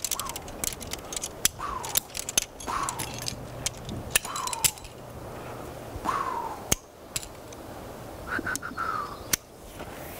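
Aluminium climbing carabiners and a belay device clinking and clicking against each other while a prusik cord and rope are handled. A short call falling in pitch repeats every second or two underneath.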